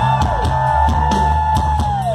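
Live rock band playing loud, with drum kit hits and a heavy bass line, and a long high note held over it that slides down near the end.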